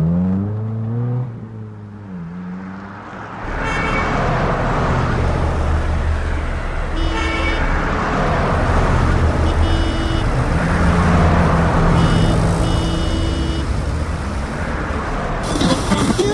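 Road traffic: an engine revving up and down in the first couple of seconds, then a steady rumble of traffic with several short car-horn honks in the middle stretch.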